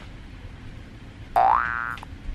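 Cartoon-style comedy sound effect added in editing: a short, loud tone that starts suddenly about a second and a half in and sweeps quickly upward in pitch, after low room tone.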